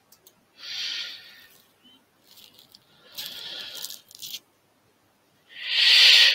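Breathy, hissing vocal noises from a person close to the microphone, three bursts of about a second each, the last and loudest just before speech resumes.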